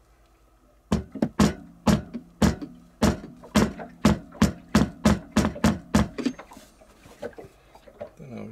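Claw hammer tapping a teak plug into a drilled hole in a wooden bulkhead: a run of about fifteen sharp, slightly ringing knocks, two or three a second, starting about a second in and stopping about six seconds in, followed by a couple of lighter taps.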